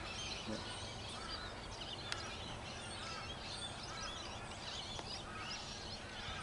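A chorus of birds calling, with many short, overlapping chirps and warbles over a steady outdoor background hiss. There is a single sharp click about two seconds in.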